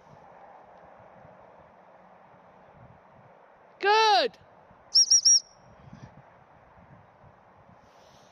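A woman's voice calls out once, about four seconds in, rising then falling in pitch, followed a second later by three quick high pips on a gundog whistle, the usual recall signal.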